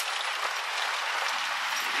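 Steady road and wind noise heard from a moving vehicle, an even hiss without distinct knocks or tones.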